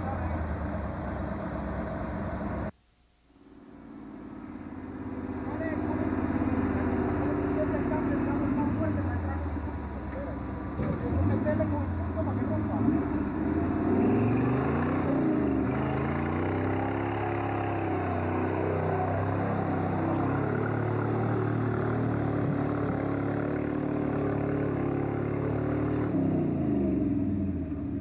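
Engine of a lifted 4x4 off-roader on big mud tires running and revving off-road in mud, its pitch rising and falling in repeated swells. The sound cuts out suddenly about three seconds in and fades back up over the next few seconds.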